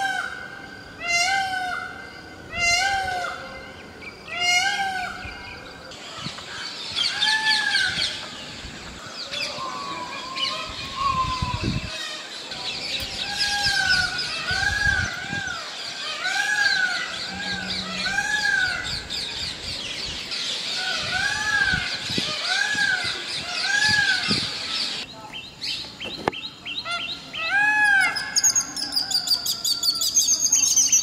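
Indian peafowl calling in series of short, arching calls, several in quick succession and repeated throughout, with smaller birds chirping densely behind for much of it.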